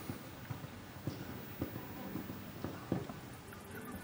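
Hoofbeats of a cantering show jumper on sand arena footing, a string of dull thuds about every half second.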